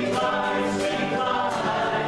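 Amateur church choir and band singing a contemporary Christian pop song together, a mixed group of voices over strummed acoustic guitars with a steady beat.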